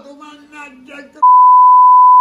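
A man's voice speaking low, then about a second in a loud, steady single-pitch beep cuts in and holds: an edited-in censor bleep.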